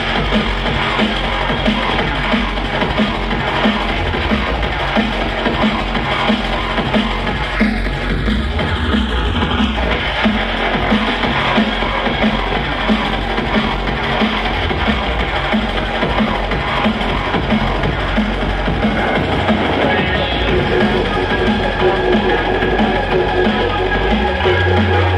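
Drum and bass DJ set played loud over a club sound system and picked up from the dance floor, with a steady beat.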